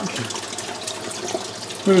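Water pouring steadily from a pipe outlet into a partly filled aquarium, splashing onto the water surface as the tank fills.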